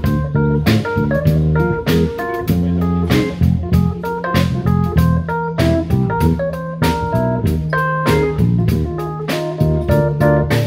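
A live jazz quartet of saxophone, electric keyboard, electric guitar and drum kit plays together, with a steady drum beat under a moving bass line and melody notes.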